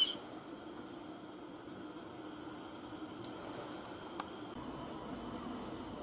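Faint steady hiss of a covered pan of fish and shellfish cooking over a gas burner on high heat, with two faint ticks about midway.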